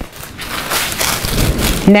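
Tissue-paper sewing pattern piece, pinned to cut fabric, rustling and crinkling as it is handled and laid flat on a cutting mat. The rustle builds over about a second and a half.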